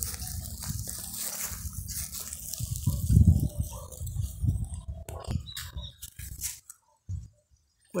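A long pole scraped and dragged through loose soil and dry leaf litter to open a sowing row, with scratchy rustling over a low rumble and a heavier thud about three seconds in.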